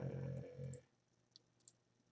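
A man's voice trailing off in the first part, then two faint computer mouse clicks about a third of a second apart.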